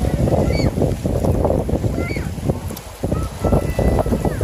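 Gusty wind buffeting a phone's microphone in a loud, uneven rumble, over small waves washing around the feet at the water's edge. A few faint distant voices come through.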